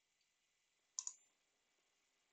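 A single computer mouse click about a second in, otherwise near silence.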